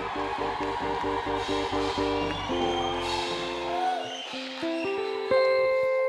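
Instrumental worship music between sung lines: quick repeated chords for the first two and a half seconds, then held chords stepping upward.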